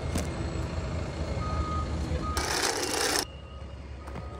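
Heavy machinery engine running low and steady, with a forklift's reversing beep sounding twice around the middle. Then comes a burst of hiss under a second long that cuts off suddenly.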